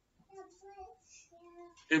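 A child's faint, high voice in the background: short, broken pitched sounds.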